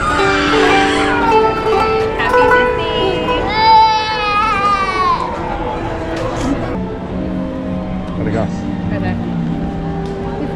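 A toddler crying and wailing, loudest in one long falling wail about three and a half seconds in, over steady background music.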